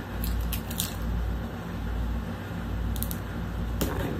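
Packing tape on a cardboard box being cut and slit open: a few short scratchy clicks, the sharpest near the end, over a steady low hum.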